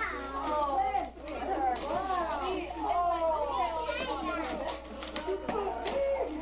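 Young children's high-pitched voices chattering and calling out over one another, rising and falling in pitch without a break.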